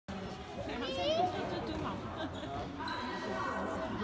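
A handball bouncing on a sports-hall floor during play, with players' shouts and calls in the hall.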